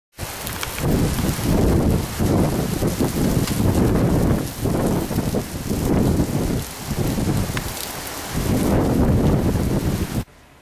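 Thunderstorm downpour pouring down hard, with deep rumbling that swells and fades several times and scattered sharp ticks of drops or pellets striking close by.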